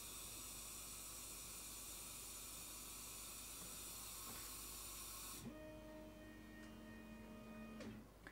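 Compressed air hissing faintly and steadily through the air-assist hose and nozzle of a NEJE 3 Pro laser engraver, let through by its electrically switched solenoid valve; the hiss cuts off suddenly about five and a half seconds in as the valve closes at the end of the job. A faint steady whine of several tones follows for about two seconds.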